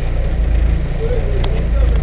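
Rally car engine running at a steady idle, heard from inside the cabin, with a single sharp click about one and a half seconds in.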